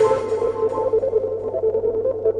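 Hard trance/techno track entering a breakdown: the kick drum and bright percussion drop out at the very start. What is left is a steady held synth tone over a low drone.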